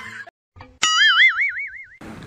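Cartoon "boing" sound effect: a sudden twang a little under a second in, its pitch wobbling up and down about five times a second as it fades.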